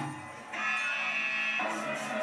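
Live baithak gana music with harmonium and dholak. After a brief dip, a steady held chord sounds from about half a second in and lasts about a second, as the song closes.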